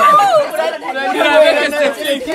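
Several young people talking over one another in lively chatter.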